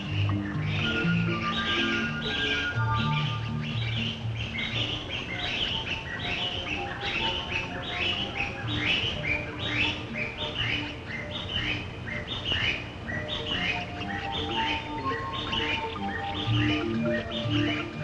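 A bird giving a steady series of short, downward-slurred chirps, about two a second, over background music with sustained low notes.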